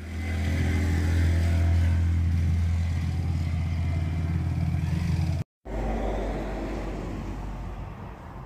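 An engine running steadily with a low, even hum. It cuts off suddenly about five and a half seconds in, and a quieter low drone follows that slowly fades.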